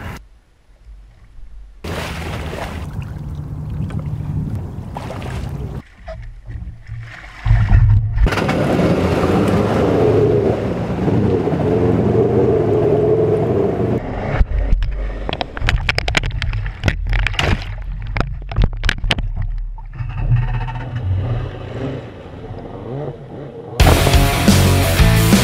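Water sloshing and splashing close to a GoPro in a floating mount at the shoreline, with a louder rumbling wash in the middle and a run of short sharp splashes in the second half.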